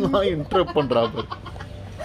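A man laughing heartily, with a woman laughing along: a quick run of short ha-ha bursts, about four or five a second, that dies away after about a second and a half.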